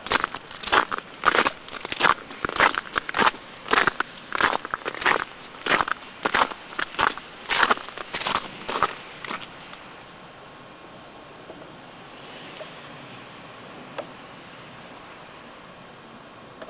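Footsteps crunching through deep snow crusted with sleet and ice at a steady walking pace, about a step and a half a second. The steps stop a little over halfway through, leaving a faint steady hiss with one small click.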